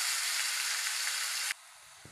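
Food sizzling in a kadai on a gas stove, a steady hiss that stops abruptly about one and a half seconds in.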